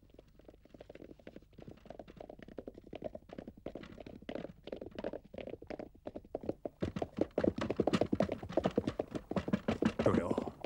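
Hoofbeats of several horses pulling carriages, a fast stream of knocks over the rumble of the carriages. They rise out of near silence and grow louder as the carriages approach, loudest in the last few seconds.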